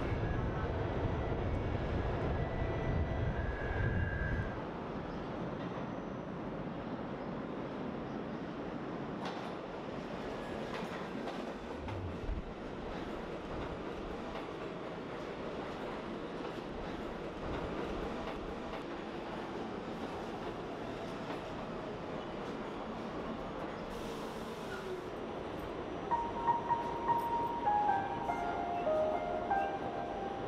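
Subway train running through the station: a steady rumble and rush of noise, heavier in the first few seconds. A few piano notes stepping downward come in near the end.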